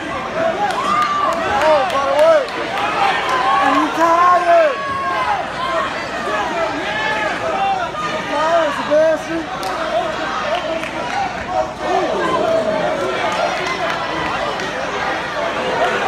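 Spectators at a cage fight shouting and calling out, many voices overlapping at once.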